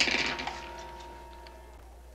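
A music cue fading out after a sharp hit at the start, then a few faint small ticks from a rifle's telescopic sight being adjusted by hand.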